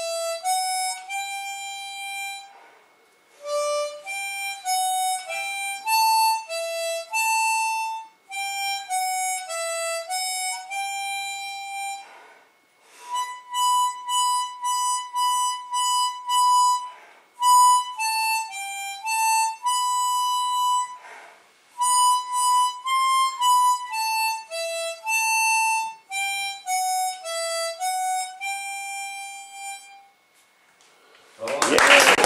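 A harmonica playing a melody of single notes in phrases of a few seconds, with short breaks between the phrases.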